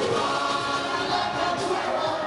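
Live concert music over a PA system, loud and unbroken, with many voices singing together.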